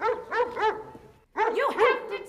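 A dog barking repeatedly in quick runs, with a short break a little past the middle.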